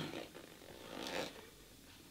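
Faint paper rustle from the pages of a small paperback being leafed through by hand, one brief swish about a second in.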